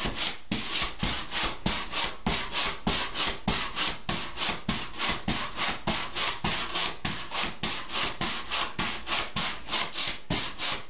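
Pogo stick bouncing steadily on a floor: a rasping, rubbing creak with a dull thud on every bounce, about three to four times a second.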